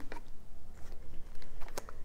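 Plastic toy hand mixer worked by its push button, its beaters turning with a few faint, light plastic clicks and rattles.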